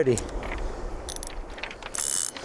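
A few light clicks and small metallic rattles from a fishing rod and reel being handled, with a brief brighter rattle a little past a second in and another right at the end.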